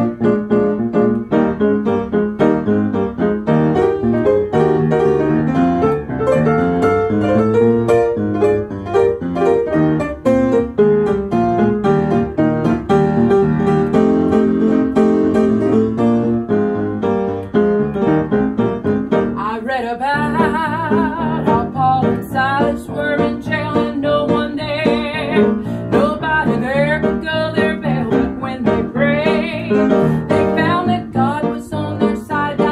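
Upright piano playing a gospel song introduction of chords and melody. About two-thirds of the way in, a woman's voice joins with a wavering, vibrato-laden line over the piano.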